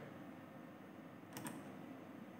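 Quiet room tone with one faint click, two close ticks, about one and a half seconds in, from a hand touching the embedded trainer's circuit board.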